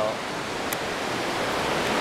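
A big river rushing far below: a steady, even roar of water that grows slightly louder toward the end.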